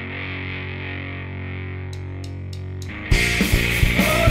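A distorted electric guitar chord held and ringing out, then four evenly spaced sharp ticks from the drum kit, and the full rock band comes in loud with drums and distorted guitars about three seconds in.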